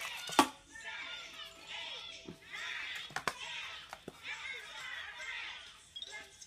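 A young child's high-pitched vocalizing, broken by a few sharp clicks of hard plastic, the loudest about half a second in, as a Kinder Surprise yellow plastic toy capsule is handled and pulled open.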